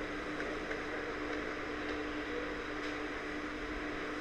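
Steady background hiss with a low, even hum: recording room tone, with a few faint clicks of computer keys as code is typed.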